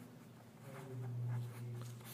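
Pen scratching across paper on a clipboard as a word is written out in short strokes. Partway through there is a quiet, steady hum from a man's voice, held for about a second.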